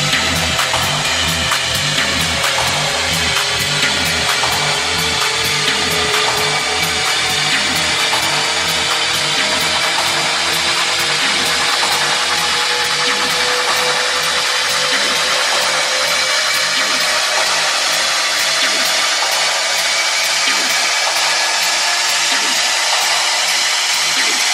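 Techno music in a build-up section: a dense, gritty noise layer and fast ticking hi-hats over a pulsing bass line that thins out in the second half, with a faint tone slowly rising partway through.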